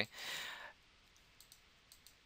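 A short breath out at a microphone, followed by near quiet with a few faint clicks.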